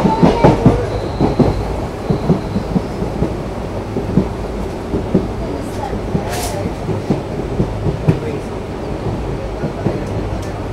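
Indian Railways passenger train running at speed, heard close to the open side of a coach: the wheels clatter irregularly over rail joints above a steady low rumble that carries the drone of the ALCO WDG3a diesel locomotive hauling it. A brief hiss comes about six and a half seconds in.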